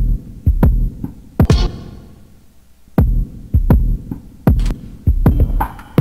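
Electronic beat from a sampler and synth setup: heavy, deep kick-like thumps with sharp clicky attacks in an irregular rhythm. It pauses for about a second in the middle, then comes back with quicker hits and a busier, brighter pattern near the end.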